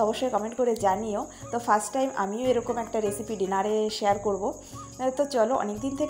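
Crickets chirring steadily at a high pitch, under a person's voice that keeps rising and falling in pitch.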